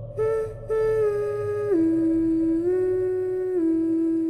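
A voice humming a slow wordless tune, holding each note and gliding down and back up between them, over a faint steady drone.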